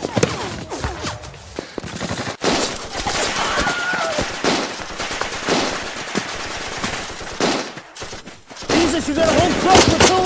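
Battle sound effects of rapid, continuous rifle and machine-gun fire, shot after shot, with a short break about two and a half seconds in and a lull around eight seconds. Men's voices shout over the gunfire near the end.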